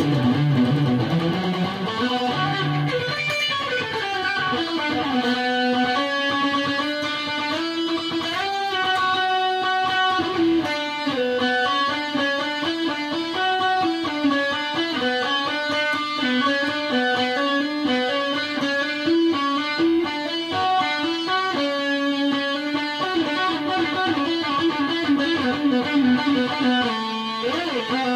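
Distorted electric guitar with humbucker pickups playing a continuous melodic line of single notes, with occasional string bends.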